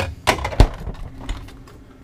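Plastic ice bin and freezer drawer of a four-door Dometic refrigerator being handled and pushed shut: a quick run of sharp clattering knocks and clicks, the loudest about half a second in.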